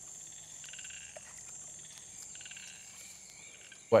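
Frogs calling in wetland ambience: two short pulsed trills, about a second in and again a little after two seconds, over a faint steady high-pitched hum.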